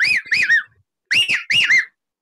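A man whistling through cupped hands in imitation of the common hawk-cuckoo's "brain-fever" call: two phrases of three arched notes each, the second phrase pitched higher.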